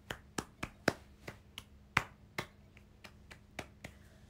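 Light tapping: about fourteen short, sharp taps at an irregular pace, the loudest about one and two seconds in.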